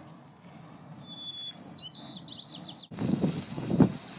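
A small bird sings a few high chirps and a quick trill over the low, steady hiss of steam venting from Puff and Stuff Geyser. About three seconds in, the sound cuts abruptly to a louder, uneven low rumble of wind on the microphone.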